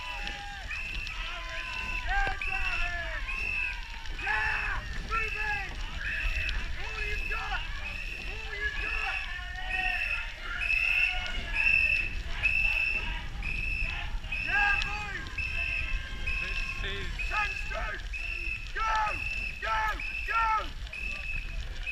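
Rowing supporters shouting unintelligible calls while running alongside racing eights, with a short call repeating about once a second.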